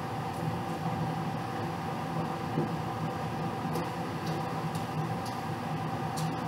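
Room air conditioner running: a steady low hum over an even hiss, with a few faint clicks in the second half.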